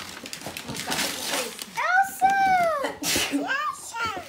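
A toddler's excited high-pitched squeals without words, one long arching cry in the middle and a shorter one near the end, over light rustling as a cardboard toy box with a plastic window is handled.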